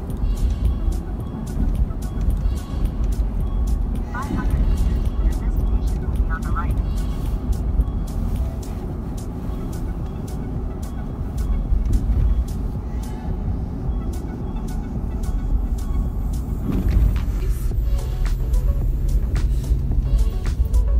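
Road and engine rumble inside a moving car's cabin, steady throughout, with music playing along with it.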